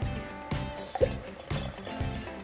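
A plastic Pikmi Pops squeezeball maker being twisted open, giving a single short pop about a second in as the bubble ball releases, a weird pop. Quiet background music plays throughout.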